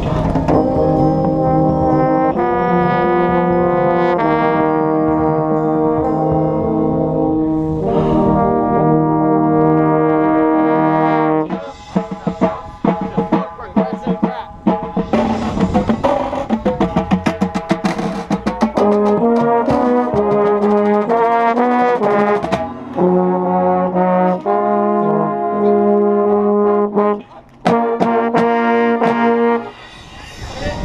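A drum corps brass line playing loud, held chords, with a euphonium right at the microphone. In the middle of the passage a run of rapid snare-drum strokes comes in under shorter, moving brass notes, and the held chords return near the end.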